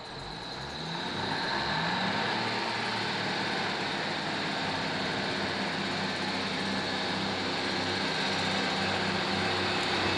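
Class 150 Sprinter diesel multiple unit drawing slowly into the platform, its underfloor diesel engines droning. The sound grows louder over the first two seconds, with a rising tone, and then holds steady.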